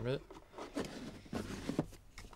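Cardboard Elite Trainer Box being closed and handled: rubbing of cardboard with a few soft knocks as the lid goes on.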